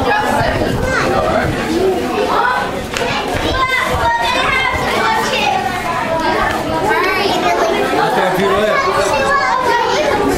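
Overlapping chatter of children's and adults' voices, with no single voice standing out.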